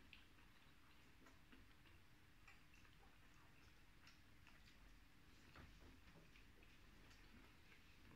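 Near silence with faint, irregular small clicks from eating by hand: fingers picking food off a plate.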